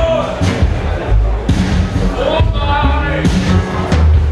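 Live blues band playing: drums, bass guitar and electric guitars, with a blues harmonica played into the vocal microphone, its notes bending.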